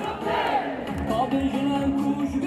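A crowd of marchers chanting and shouting slogans together, with some voices held as longer tones in the second half.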